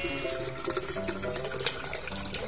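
Water from a freshly opened young coconut trickling and splashing into a plastic cup, under background music of short, separate notes.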